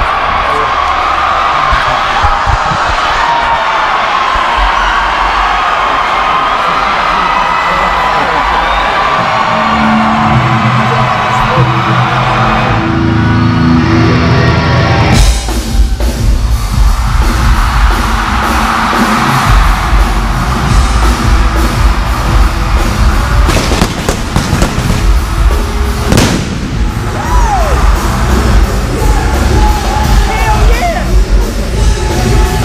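Arena crowd cheering and yelling, joined by low sustained intro notes; about halfway through, loud live rock music kicks in suddenly over the arena sound system, with a couple of sharp bangs near the end.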